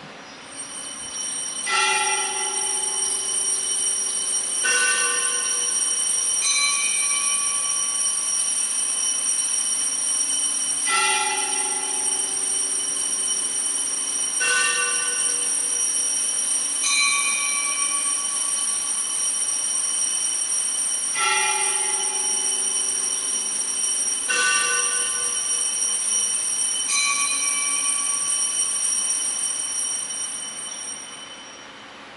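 Chimes playing a slow three-note phrase three times over, each note ringing for a couple of seconds, over a steady high whine. They mark the elevation of the host at the consecration.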